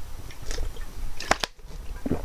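Low room hum with a few short clicks, two sharp ones close together about one and a half seconds in, followed by a brief drop to near silence.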